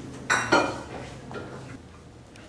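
Tableware clinking: two sharp clinks about a quarter second apart, ringing briefly.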